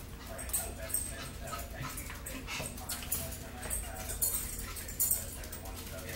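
A dog whining in several short high-pitched cries, with forks clinking against plates.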